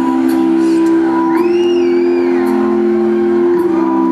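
Live keyboard holding sustained chords between sung lines, the chord changing near the end. A brief high wavering tone rises and falls over it about a second and a half in.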